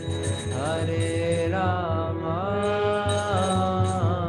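A single voice singing a devotional chant in long, gliding held notes over sustained musical accompaniment with a regular low beat.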